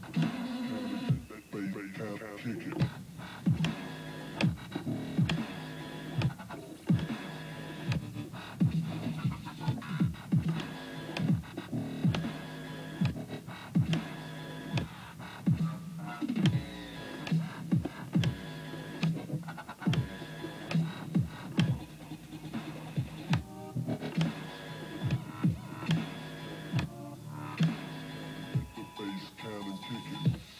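Dubstep music being mixed on a DJ controller, with strong bass and a steady, regular beat.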